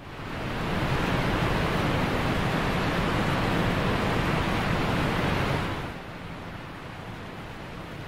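A steady rushing noise, like surf or running water, that swells in over the first second, holds, and then falls away about six seconds in to a fainter hiss.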